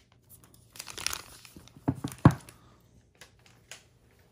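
Thin plastic shrink-wrap film crinkling and tearing as it is peeled off a phone box, with two sharp clicks about two seconds in, the second the loudest, then a few faint ticks.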